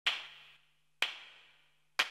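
Two sharp percussive hits about a second apart, each ringing out and fading over about half a second, at the start of a TV show's intro jingle.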